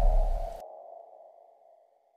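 Tail of an outro logo sound effect: a deep rumble cuts off about half a second in, leaving a single ringing tone that fades away.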